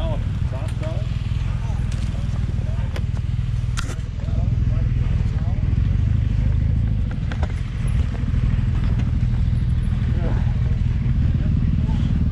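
Adventure motorcycle engines idling with a steady low rumble, with a few sharp clicks and knocks over it.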